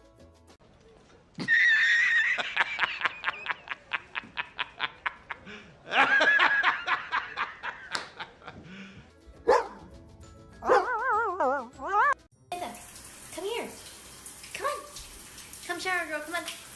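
A man laughing hard in fast, rhythmic 'ha-ha-ha' bursts that slow and fade out, then a second loud bout about six seconds in.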